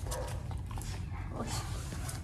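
Dog sniffing and eating treats off a hard floor close to the microphone: soft snuffles and small clicks over a steady low hum.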